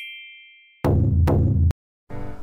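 Edited intro sound effects: a bright chime rings out and fades over most of a second, then a loud, bass-heavy hit sounds for under a second and cuts off abruptly.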